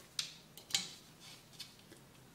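Small metal nuts and a screwdriver being handled: two sharp light clicks in the first second, then a fainter one, as the parts are picked up and set against the hydraulic pump mount of a scale model dozer.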